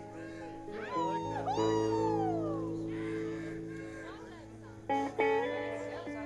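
Live band guitar playing slow, sustained notes with long downward pitch bends, over a steady held bass note, and two sharply picked notes near the end.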